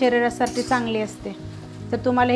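Background music with a melodic, voice-like line over held low notes, loudest in the first second, over a light sizzle of chopped spinach being stirred in an iron kadhai.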